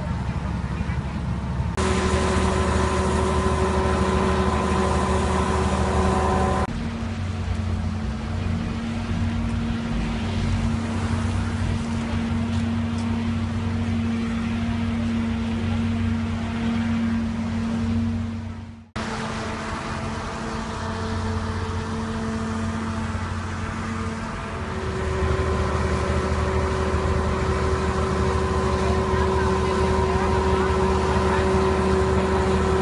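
Steady hum of idling vehicle engines with faint voices in the background. The hum changes pitch abruptly a few times, and there is a brief dropout about two-thirds of the way through.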